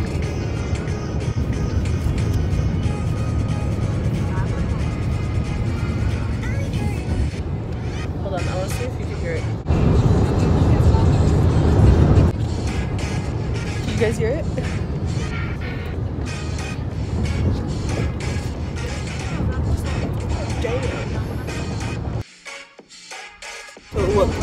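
Loud music playing over a hall's PA speakers, mixed with crowd voices. It gets louder for a couple of seconds about ten seconds in, then drops away suddenly near the end.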